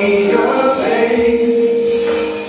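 A man singing a gospel worship song into a microphone, holding one long note.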